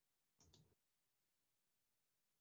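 Near silence with a faint double click about half a second in: a computer mouse being clicked.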